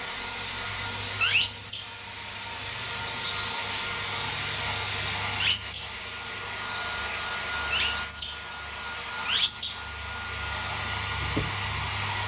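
Hand-held hair dryer running steadily while a baby monkey gives about half a dozen short, high-pitched squeaky calls, most of them sweeping upward in pitch, a second or two apart.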